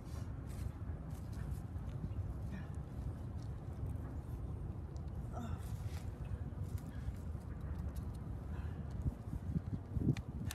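A hand trowel digging into garden soil and spinach plants being pulled up, with scattered short scrapes and knocks over a steady low rumble.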